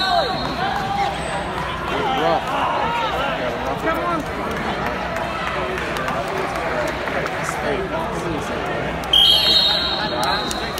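Many voices shouting and calling out in a large, echoing gym during a wrestling match, with a loud, shrill whistle sounding about a second before the end.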